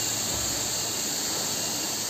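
Waterfall rushing: a steady, even noise of falling water.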